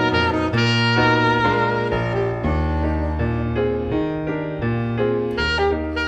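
Alto saxophone and grand piano playing together, the saxophone carrying a melody over the piano's chords and moving bass notes.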